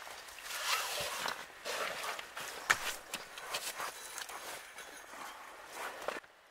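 Irregular rustling and scuffing of clothing against the shelter's tarp and debris as a person crawls into a low log shelter, with a few small sharp knocks and clicks.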